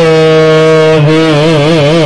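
A man's voice singing one long, wordless held note as the opening of a Baul song, steady at first and then wavering up and down in quick ornaments from about a second in, over a harmonium.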